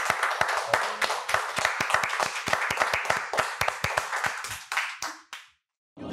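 People applauding with a steady run of hand claps that fades out about five and a half seconds in.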